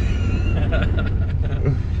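Steady low drone of a Mercury Marauder's V8 and its tyres heard inside the cabin while driving, with a laugh near the end.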